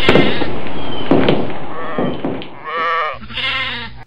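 Sheep bleating. First comes a loud, rough noise with a few knocks for about two and a half seconds, then two separate wavering bleats in the last second and a half.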